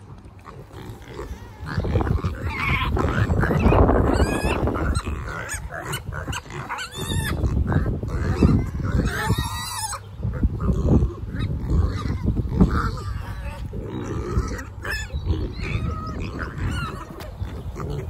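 Several kunekune piglets grunting close to the microphone, with occasional higher squealing calls, amid rustling as they move about.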